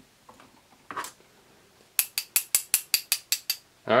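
A rapid run of about a dozen sharp ratcheting clicks, about seven a second, starting about two seconds in, as the threaded cap on the snorkel of an HG P408 1/10-scale RC Humvee is twisted in the fingers to unscrew it.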